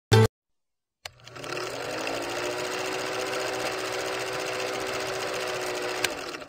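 Film projector sound effect accompanying a countdown leader: a short loud blip at the very start, then, after a click about a second in, a steady mechanical whirring run that quickly builds up and holds.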